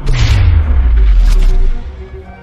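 Cinematic boom sound effect for an animated logo: a sudden deep impact whose rumble sinks in pitch under a wash of noise, dying away after about a second and a half into quieter string music.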